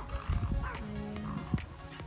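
Faint animal calls a couple of times, over low rumbling thumps of wind and handling on the microphone.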